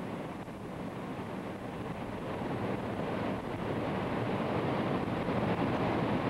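Steady rushing noise of floodwater pouring over and cutting through an eroding earthen cofferdam, growing gradually louder.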